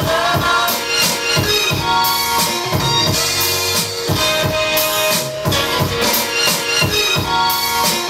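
Sample-based hip-hop beat with drums, played from an Akai MPC 1000 sampler while its pads are tapped.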